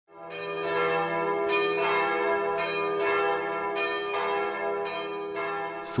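Church bells ringing: a series of strokes, each ringing on and overlapping the next.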